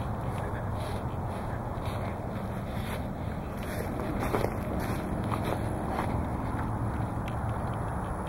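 Footsteps on a grass lawn, with steady rustling noise from a handheld camera being carried while walking.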